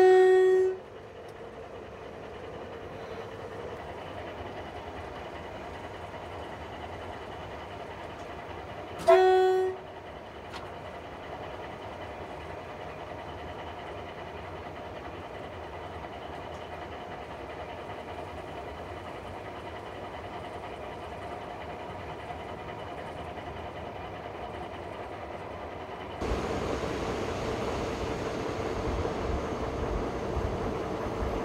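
Horn of a Harzkamel narrow-gauge diesel locomotive sounding two blasts, one at the very start and a shorter one about nine seconds in, over the steady noise of the locomotive running on the track. The running noise grows louder near the end.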